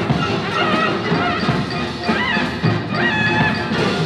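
An orchestra playing dense ensemble music, with high lines that bend up and down in pitch over it.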